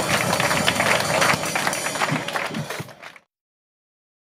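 Audience applause with many hands clapping as a live song ends, fading and cutting off abruptly about three seconds in.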